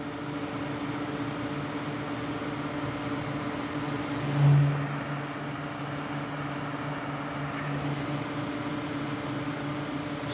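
Cryorig CX6 tower CPU cooler's fan running at 100% speed, a steady whir with a low hum, heard with the PC's other fans. The hum swells briefly about four and a half seconds in. It is not really loud.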